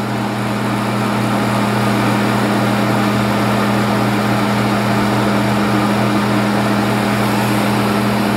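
Electric quartz heater's fan motor running steadily, with a low hum over a rush of air, while the heater lies on its back with its tip-over safety switch bypassed.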